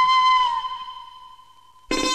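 Film score music: a flute's long held note that bends slightly down about half a second in and fades away, then plucked-string music comes in sharply near the end.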